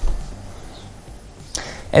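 A short, low whoosh at the cut, fading away within about half a second, then faint steady background until a man's voice resumes near the end.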